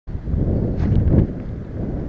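Wind buffeting the camera microphone: a low rumble that gusts strongest about a second in, then eases.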